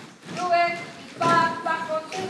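A woman's voice singing short held notes in two phrases, the first about half a second in and the second from just past a second in.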